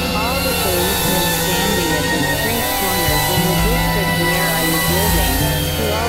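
Experimental electronic synthesizer drone music: low sustained bass tones that step to a new pitch every second or so, under wavering, warbling tones in the middle range and a steady hiss.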